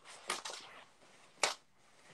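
A sweater being grabbed and handled: fabric rustling and scuffing in the first second, then one sharp click about one and a half seconds in.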